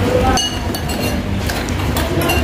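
A metal spoon clinks against a ceramic soup bowl about half a second in, with small scraping ticks, over a steady low rumble.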